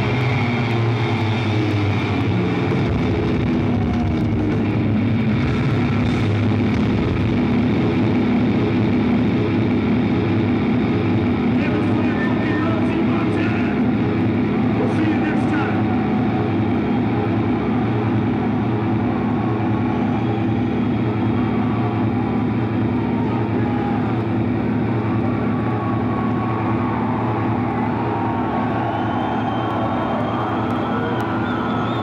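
Live heavy metal band holding a loud, droning distorted chord through its guitar and bass amplifiers, the closing wall of noise of a song; the notes change over the first few seconds, then the drone holds steady.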